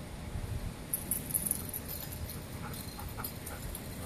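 A dog whimpering faintly in a few short whines during the second half, over a steady low rumble.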